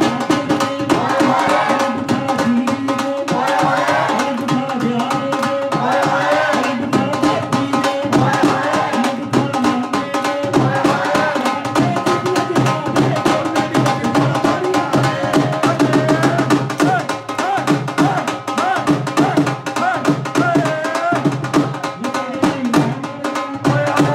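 Punjabi dhol drumming in a fast, steady beat, with people singing boliyan (folk couplets) over it.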